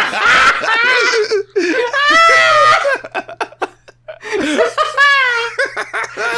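People laughing hard, with a short lull of gasping breaths a little past the middle.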